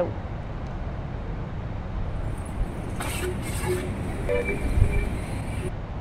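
Street traffic noise: a steady low rumble of vehicles, with faint distant voices.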